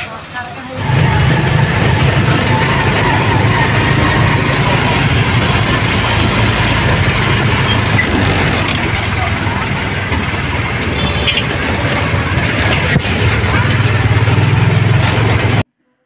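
A vehicle engine runs loud and steady with road noise, heard from on board while moving. It starts about a second in and cuts off suddenly near the end.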